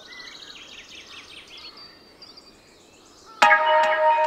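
Faint birds chirping in quiet outdoor ambience. Near the end, background music starts with a sudden ringing plucked chord, guitar music that carries on.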